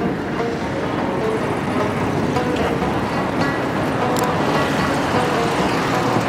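Steady road traffic noise from cars and motorbikes on a city street, with music playing over it.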